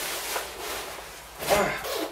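Rustling of motorcycle riding clothes being handled and pulled about, with a short vocal sound about one and a half seconds in.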